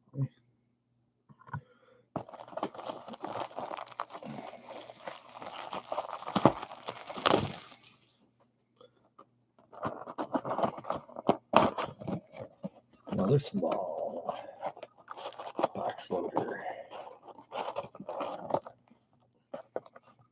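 Plastic shrink-wrap being torn and crinkled off a box of trading cards for several seconds. After a pause comes a run of crackling, scraping and clicking as the box is opened and the card packs are handled.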